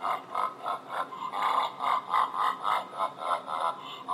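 A played-in sound effect: a rapid run of short, pitched, voice-like pulses, about three or four a second.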